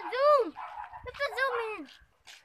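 Several high-pitched wordless vocal calls, each rising and then falling in pitch, in quick succession.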